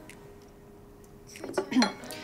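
A ceramic coffee cup set down on its saucer: a quick cluster of sharp, ringing clinks about one and a half seconds in.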